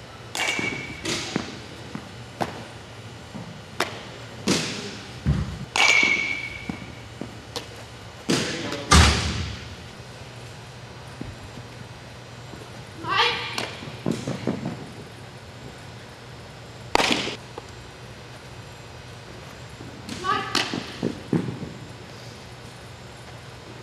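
Sharp knocks of softballs being hit and landing on turf or in a glove, echoing in a large indoor hall. Two of the knocks carry a brief ringing ping. There are short shouts between them.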